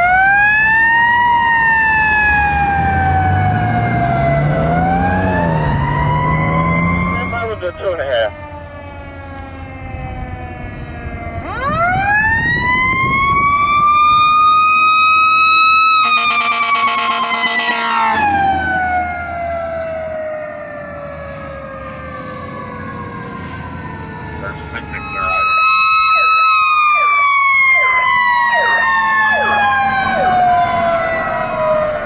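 Fire truck sirens wailing, their pitch rising and falling in long slow sweeps, as several fire trucks pass one after another. The sirens drop quieter for a few seconds twice, then come back loud.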